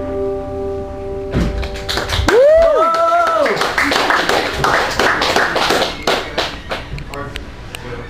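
The last guitar chord rings for about a second and then stops. Small-audience applause follows, with one rising-and-falling whoop in the first seconds, and the clapping thins out toward the end.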